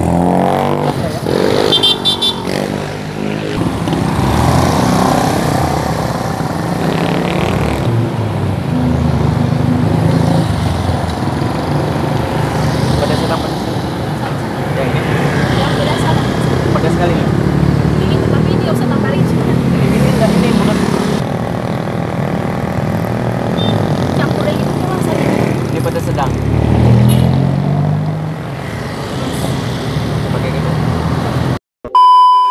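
Road traffic at a street intersection: vehicle engines running and passing continuously, with people talking nearby, their voices indistinct.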